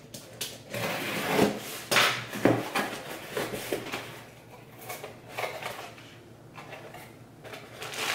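A shipping package being opened by hand: a run of irregular scraping, tearing and rustling of packaging, louder in the first few seconds and quieter later.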